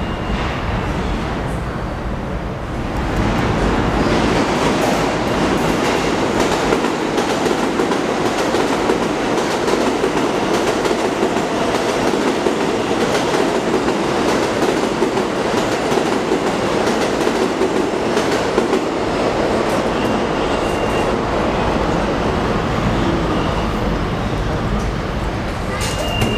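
Subway train running past on a far track, a steady rumble of wheels on rail with scattered clicks over the rail joints, building up about three seconds in.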